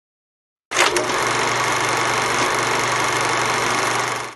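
Dead silence, then under a second in a sudden start into a steady mechanical whirring rattle with hiss, like an old film projector running: a vintage-film sound effect in the show's closing graphics.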